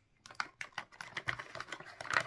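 A quick, uneven run of light clicks and taps, about six or seven a second, from hands working with small objects.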